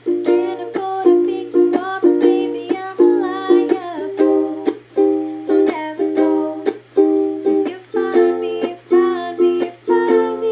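Ukulele strummed in a steady rhythm of chords, with repeated strokes each second.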